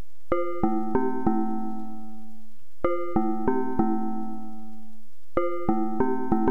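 Instrumental intro of a hip-hop beat: a keyboard plays a four-note figure, each note ringing out, repeated about every two and a half seconds.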